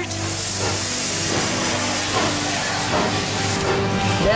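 Steam hissing out of a steam train, starting suddenly and lasting nearly four seconds before fading, over background music with held low notes.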